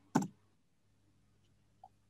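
A single sharp click about a fifth of a second in, over a faint steady low hum.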